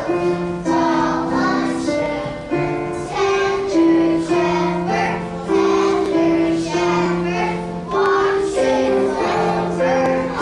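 A children's choir singing together, moving through held notes of a melody.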